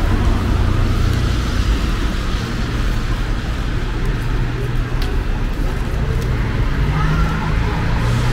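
Street traffic: a steady low rumble of cars on the road.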